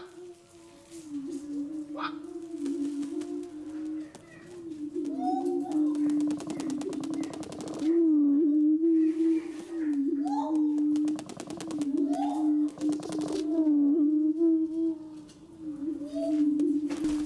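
Male greater prairie chicken booming in courtship display: a low, hollow moan repeated in wavering phrases, with higher whooping calls over it. Twice it breaks into a long burst of rapid pattering from its stamping feet.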